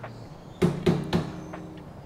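Three quick knocks on a front-loading tumble dryer, a little over half a second to a second in.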